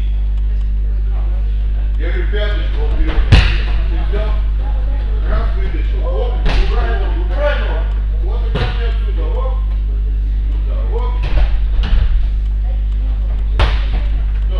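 Bodies being thrown and landing on gym mats during judo-style throw practice: a series of sharp thuds, the loudest about three seconds in, more around six and a half, eight and a half, eleven to twelve seconds, and one near the end. Background voices and a steady low hum continue underneath.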